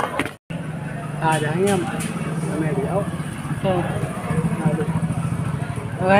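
A motor vehicle engine running steadily, a low even drone that starts suddenly after a brief gap of silence about half a second in, with voices over it.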